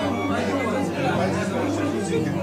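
Several people talking over one another: the chatter of a small gathering.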